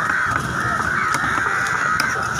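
Crows cawing continuously, with a few sharp chops of a large knife cutting fish on a wooden block.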